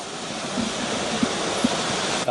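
Steady, even background hiss with no clear pitched sound, the ambient noise under a press-scrum recording.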